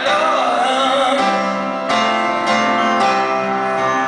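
Live music: a man singing a slow song over instrumental accompaniment, the chords changing every second or so.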